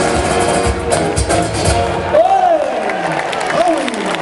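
A live band's Spanish-language song with a steady low beat ends about halfway through. The outdoor crowd then claps and cheers, with a few rising-and-falling shouts.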